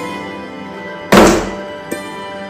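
Edited impact sound effect about a second in: one loud, sudden thunk with a noisy splash-like tail that dies away within half a second, laid over instrumental background music.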